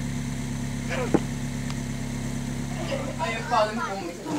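Citroën Berlingo van's engine idling with a steady low hum, and a short sharp click about a second in.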